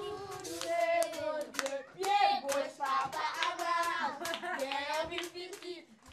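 A group of children singing together and clapping their hands in a small room.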